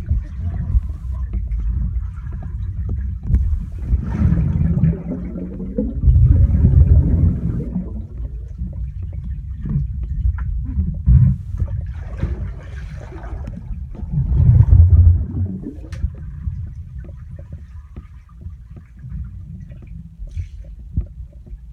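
Water moving around a submerged phone microphone: a muffled, low rumble with crackling and swishing as a swimmer moves underwater, swelling louder twice, about six and fifteen seconds in.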